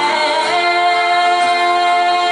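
A large group singing together live, accompanied by several strummed acoustic guitars. About half a second in, the voices move onto one long held note.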